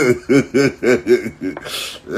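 A man laughing in a quick run of short pulses, about four a second, ending with a breathy intake near the end.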